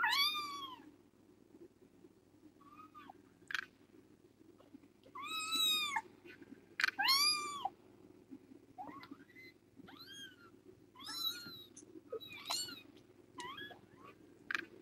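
Young kittens meowing again and again in high, thin cries, each call rising and then falling in pitch. The loudest cries come right at the start and between about five and eight seconds in, with a faint steady hum beneath.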